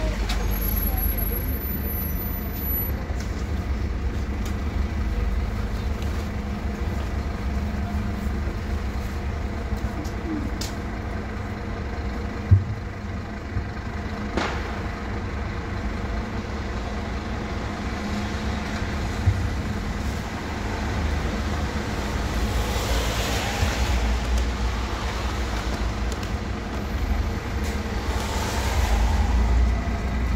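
City bus engine idling steadily at a stop, with a sharp knock about twelve seconds in. Two bursts of air hiss from the bus's pneumatic system come in the last third.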